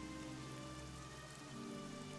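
Faint steady rain ambience with a soft, sustained music bed underneath.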